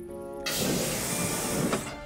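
A loud, even rushing hiss starts about half a second in and stops just before the end, following a held music chord.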